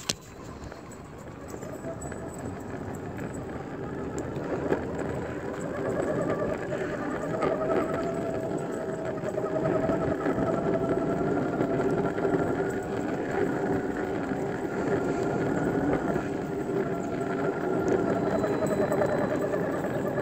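Skateboard wheels rolling on rough, cracked asphalt, giving a continuous rumble with a faint hum that slowly grows louder.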